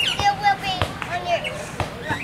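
Young children's high-pitched voices calling and babbling, with two sharp knocks about a second apart.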